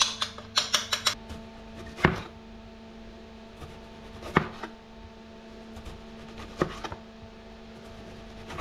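Kitchen knife slicing a tomato on a plastic cutting board, the blade knocking the board three times about two seconds apart. Before that comes a quick run of clicks from a spoon scraping and tapping a ceramic plate. A steady low hum runs underneath.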